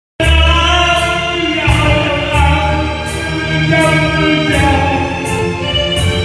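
A man singing emotionally into a handheld microphone, holding long wavering notes over an amplified backing track with a steady beat.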